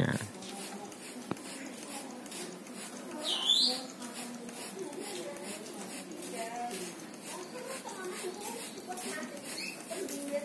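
A single short, high, squeaky bird call that sweeps down and back up, about three and a half seconds in, over faint background voices, with one light click shortly after the start.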